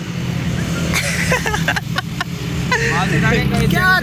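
Road traffic: a steady low engine drone with the noise of passing vehicles.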